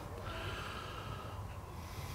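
Faint breathing close to the microphone, one soft breath in the first second, over a low steady background hum.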